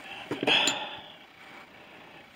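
Radio gear and its leads being handled: a short rustle with one small clink about two-thirds of a second in.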